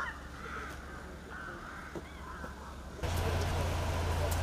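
Several short, harsh bird calls over a quiet outdoor background. About three seconds in, the sound cuts abruptly to a louder steady low hum with a hiss.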